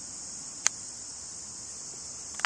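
An iron clipping a golf ball in a chip shot: one sharp click about two-thirds of a second in, over a steady high-pitched insect chorus.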